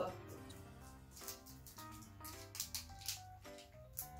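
Quiet background music, a melody of held notes stepping up and down, with light crinkling clicks of a KitKat's foil-plastic wrapper being handled and opened.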